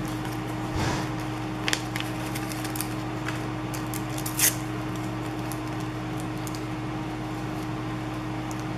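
Faint rustles and light clicks of wax paper and a dimensional sticker being handled and pressed onto a scrapbook page, the sharpest click about four and a half seconds in, over a steady low electrical hum.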